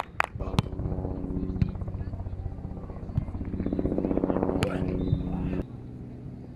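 A motor running with a steady low hum and rapid pulsing, growing louder and then cutting off abruptly about five and a half seconds in. A few sharp smacks sound over it.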